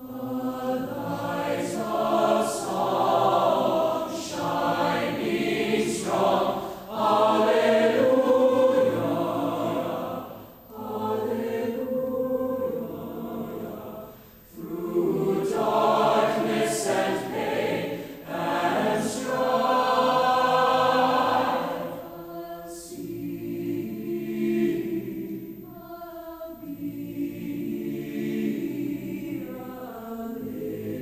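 Large mixed choir singing in a reverberant concert hall, in several phrases with short breaks between them, loudest in the middle and softer near the end.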